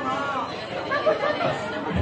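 People's voices talking and calling out over one another.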